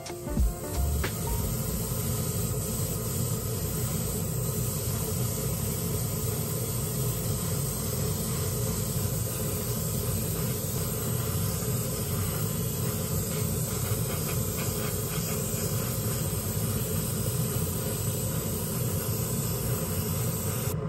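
Gravity-feed airbrush spraying 2K urethane clear coat onto a plastic model car body: a steady hiss of air and atomised paint, over a steady low rumble.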